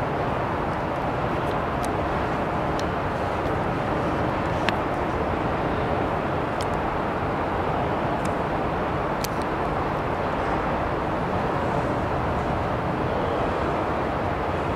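A subway train pulls slowly into an underground station platform and comes to a stop. It is heard as a steady, even noise of train and station, broken by a few sharp clicks.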